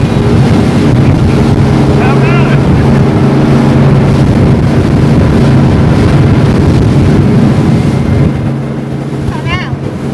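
Speedboat engine running steadily at speed, with water rushing past the hull and wind on the microphone. The overall sound drops somewhat about eight seconds in. Two brief wavering high cries break in, about two seconds in and near the end.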